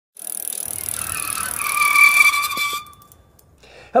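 A rushing noise with a high squealing tone that builds up and then cuts off sharply a little under three seconds in. A man says 'Hello' at the very end.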